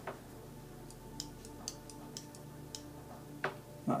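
Faint light ticks, about two a second for a couple of seconds, over a low steady hum.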